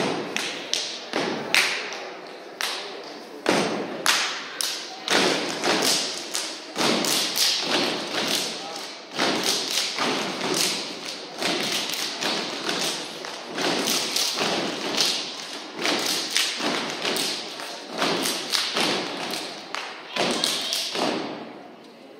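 Step routine: stomps, claps and body slaps from a line of performers, a few sharp hits each second in a driving rhythm, stopping near the end.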